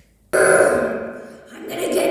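A person's voice making one long, rough throat sound that starts suddenly about a third of a second in and fades away over about a second. Another voiced sound begins near the end.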